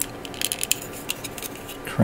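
Light clicks and handling noise of hard plastic model kit parts from a 1/500 Bandai Space Battleship Yamato 2199 kit being pushed and worked together by hand, a few sharp ticks clustered about half a second in; the part will not seat all the way.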